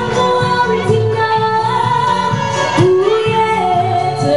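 A woman singing live into a handheld microphone, amplified through PA speakers over backing music. She holds long, wavering notes, with a slide up into a new note about three seconds in.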